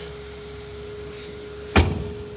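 A steady low hum, then near the end a single loud clunk as the folded rear seatback of a Range Rover Evoque is swung back up and latches upright.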